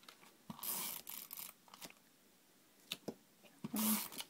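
Hand-held adhesive tape runner rolled over cardstock: a soft rasping run about half a second in and another just before the end, with a few light clicks of paper and the dispenser being handled.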